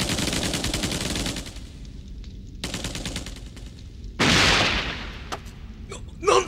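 Rapid automatic gunfire sound effect in two bursts, the first trailing off and the second starting about two and a half seconds in. About four seconds in comes a louder rush of noise, then two single sharp shots near the end.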